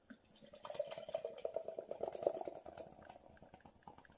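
Carling lager poured from a can into a glass, starting about half a second in as quick gurgling pulses that fade out near the end as the glass fills.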